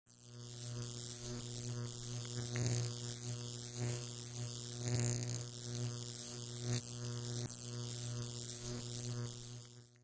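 Dark ambient intro drone: a steady low hum with a hissing, wavering upper layer. It fades in at the start and fades out just before the end.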